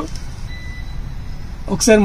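A short, faint electronic beep about half a second in, over low room noise: the car's infotainment touchscreen giving its tap tone as a finger presses it.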